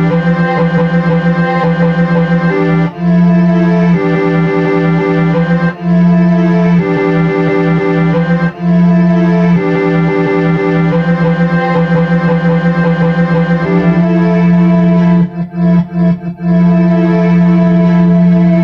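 Held keyboard chords from a software instrument played on an Alesis V49 MIDI keyboard. The chords change every second or two over a steady low note, and there are a few short re-struck notes near the end.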